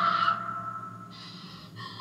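A held tone dies away over the first second, followed by soft breaths, one from about a second in and another just before the end.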